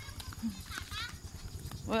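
Wind and handling noise on a phone microphone carried while walking: a low rumble with rapid small knocks, footsteps on a grassy dirt path, and a faint short call about a second in.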